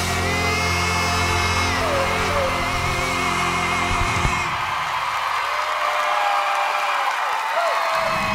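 A powerful male voice holds a long final note over a full band, with the accompaniment ending about four seconds in. A crowd then cheers and whoops.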